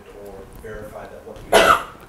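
Faint speech, then a single loud cough about one and a half seconds in.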